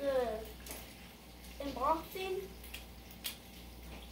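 A child's voice trailing off at the start and a short rising vocal sound about two seconds in, with a few faint light clicks in between as plastic Beyblade parts are handled and fitted together.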